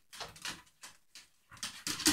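Two dogs playing on a wooden floor: a scatter of short scuffling sounds and soft dog noises, getting busier near the end.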